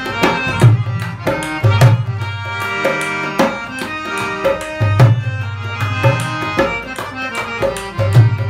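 Harmonium playing a melody over a dholak's rhythm, an instrumental passage without singing. The drum's deep bass strokes drop out for about two seconds in the middle while the lighter strokes carry on.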